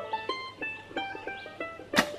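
Light acoustic background music: a melody of short plucked-string notes stepping up and down. A sharp click comes at the very end.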